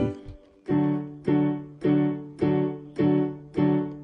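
A D major chord played with both hands on an electronic keyboard with a piano voice, struck six times at an even pace of about two a second, each strike fading before the next.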